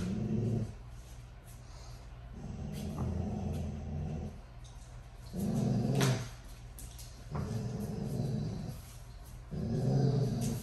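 Dogo Argentinos play-growling in low bouts of one to two seconds, five times, while tugging at a rope toy, with a sharp click about six seconds in.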